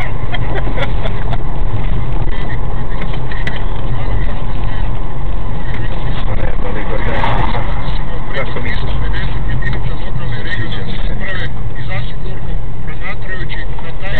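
Loud, steady engine and road rumble inside a moving car, with indistinct voices talking over it.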